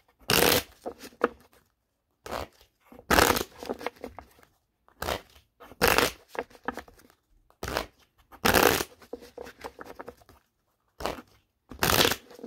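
A deck of fortune-telling cards shuffled by hand in repeated short bursts of riffling, roughly one a second, with a longer pause near the end.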